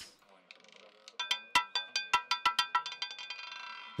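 Roulette ball bouncing and rattling across the spinning wheel's pocket separators as it settles into a number: a run of ringing clicks, starting about a second in, that come faster and fade as the ball comes to rest.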